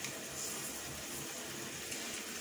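Raw chicken pieces and spice paste sizzling softly and steadily in oil in a frying pan.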